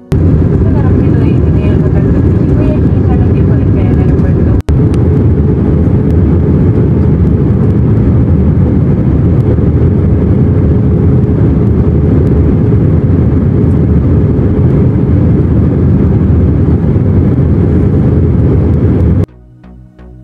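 Loud, steady roar of a jet airliner in flight heard from inside the cabin: engine and airflow noise. It drops out for a moment about four and a half seconds in and stops suddenly about a second before the end.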